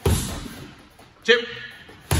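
A gloved punch lands on a free-standing heavy bag with a sudden thud right at the start and dies away over about half a second in the large room. A man's voice calls "two" a little over a second later.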